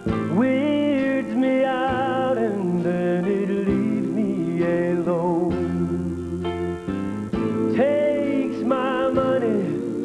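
Country music: a male voice singing with vibrato over a band accompaniment that includes guitar.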